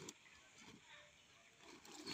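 Near silence: faint outdoor ambience.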